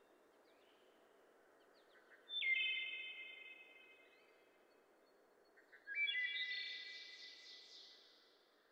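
Quiet outdoor ambience with two high, whistled bird calls, one about two seconds in and another near six seconds, each starting suddenly and fading away slowly.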